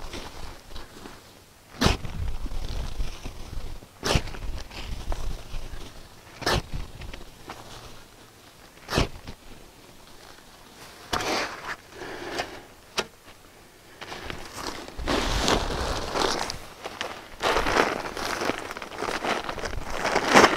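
A steel shovel scooping horse manure from a tractor's front-loader bucket. The blade gives a sharp knock or scrape about every two and a half seconds. In the second half come longer stretches of rough scraping and rustling.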